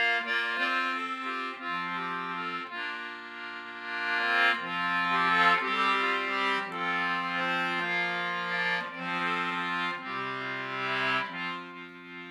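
Wheatstone concertina with the Maccann duet system played solo: a tune in held notes, several sounding at once, with low notes sustained beneath the melody.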